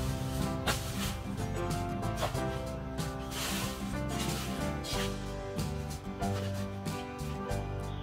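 Instrumental background music, with changing notes over a low bass line and occasional percussive hits.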